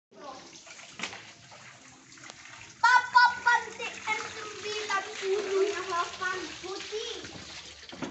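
Water pouring from a pipe into a children's paddling pool, with light splashing. From about three seconds in, young children's high-pitched voices are the loudest sound.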